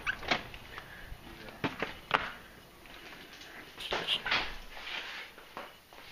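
A door being opened and walked through: a few scattered knocks and clicks, the loudest about two seconds in.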